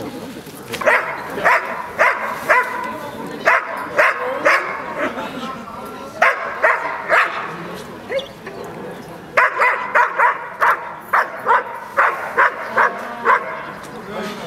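Large black working dog barking hard and repeatedly at a protection helper while held back on the leash. The barks are short and sharp, about two a second, in four runs with brief pauses between them, the longest run in the second half.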